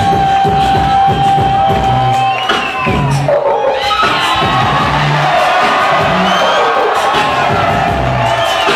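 Live hip-hop music with a single held tone for the first couple of seconds and sparse deep bass hits, over a large crowd cheering, with whoops rising from about four seconds in.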